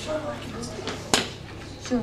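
Room tone with a steady low hum and faint voices, broken by one sharp knock about a second in.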